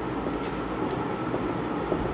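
Steady background room noise with a few faint ticks of a marker pen writing on a whiteboard.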